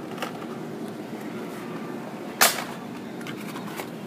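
Low background hiss with faint clicks of blister-carded die-cast cars being handled on a display rack, and one sharp plastic clack a little past halfway.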